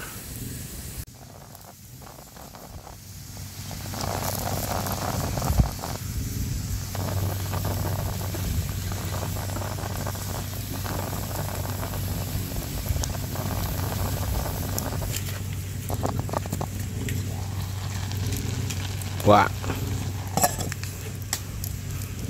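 Wood fire crackling under a lidded stainless steel pot of rice. From about four seconds in comes a steady hiss and sizzle as the pot comes to the boil and steam escapes from under the lid.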